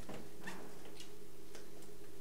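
Faint ticks or light clicks, about two a second, over a steady room hum.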